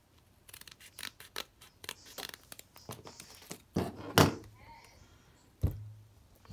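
Scissors snipping through a plastic sheet of adhesive rhinestones in a quick series of short cuts, followed by louder handling noises around four seconds in and a thump near the end.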